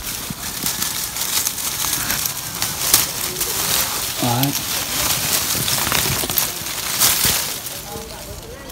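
Lychee tree leaves and twigs rustling and crackling as a hand pulls through the foliage to break fruit clusters off the branch. There are sharp snaps about three seconds in and again near the end.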